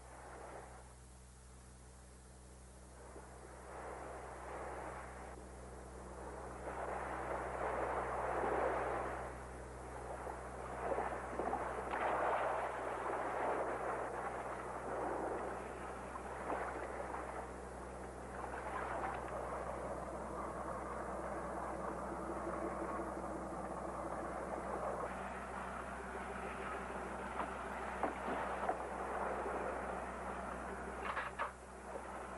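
A boat's engine idles with a steady low hum while sea water washes and slaps against the hull in repeated surges.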